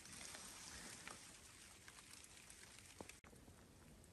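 Near silence: faint outdoor ambience of light rain, with one small click about three seconds in.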